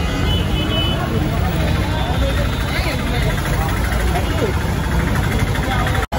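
Busy street traffic: a steady low rumble of vehicles with indistinct voices mixed in, and a brief high beep about half a second in.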